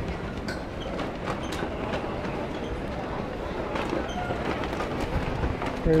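Wind buffeting the microphone, a steady rumbling rush, with faint voices in the distance.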